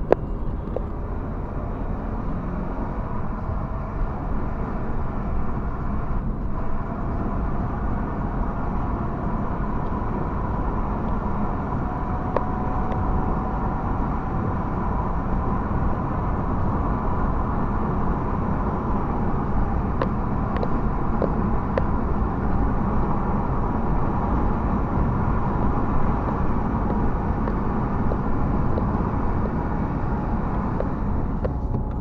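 Steady engine and road noise inside a moving car's cabin, as picked up by a dashboard camera. A faint whine climbs slowly in pitch over the first dozen seconds.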